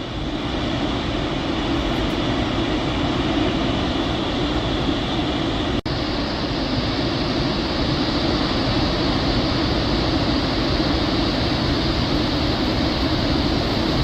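Flood water rushing out of an open dam spillway gate and crashing into the river below as a loud, steady rushing noise. About six seconds in there is a momentary break, after which the noise is hissier.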